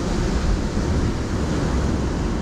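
Wind buffeting the microphone: a steady, rough rumble with no distinct events.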